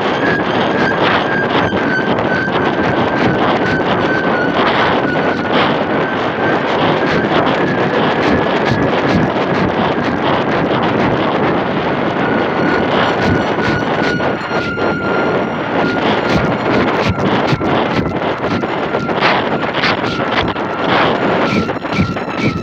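Heavy wind buffeting a microphone carried high aloft on a kite, gusting unevenly, with a thin steady high tone running through it that drifts slowly lower.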